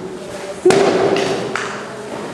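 A single loud bang about two-thirds of a second in, like a balloon bursting, echoing in a large hall. A short steady tone rings on for under a second, with a couple of softer knocks after it.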